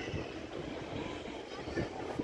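Outdoor city ambience: a steady low rumble with faint, distant voices of people.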